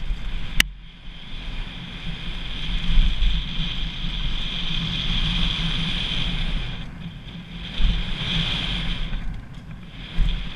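Wind rushing over the microphone and tyres rumbling over a dirt and gravel trail as a mountain bike descends at speed, swelling and dipping with the terrain. A single sharp click comes about half a second in.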